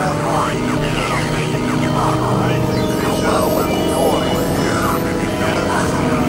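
Experimental electronic synthesizer music: a dense bed of steady layered drone tones with short, wavering, voice-like sweeps rising and falling over it.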